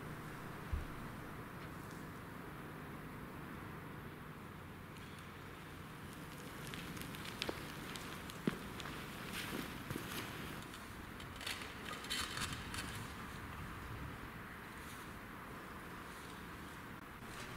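Faint footsteps and clothing rustle on loose ground, with a few light clicks and crunches from about halfway through, over a steady low background hiss; a soft low thump comes just under a second in.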